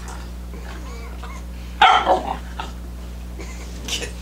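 Labrador retriever puppy barking: one loud, sharp bark about two seconds in, followed by a couple of quieter ones.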